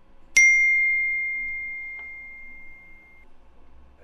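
A single bright bell-like ding, struck sharply about a third of a second in, its clear tone ringing on and fading out over about three seconds.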